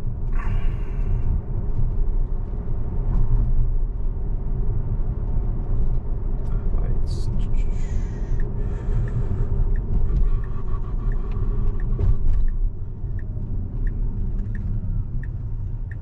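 Cabin noise of a Tesla electric car driving itself: a steady low rumble of tyres on the road that eases near the end as the car slows down. In the last few seconds a turn-signal indicator ticks evenly, a little under two ticks a second.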